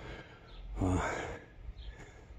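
A man's breathy sigh that ends in a brief, hesitant "uh" about a second in.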